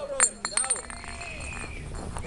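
A few sharp clinking clicks in the first half-second, the loudest about a quarter of a second in, with faint voices in the background.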